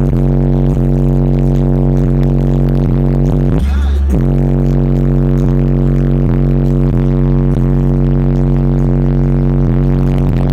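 Bass-demo music played at extreme volume through a wall of six PSI 18-inch subwoofers driven by three HD15K amplifiers, heard from inside the vehicle's cabin. Deep, steady bass tones pulse about twice a second, with a brief drop to a deeper tone for about half a second near the middle.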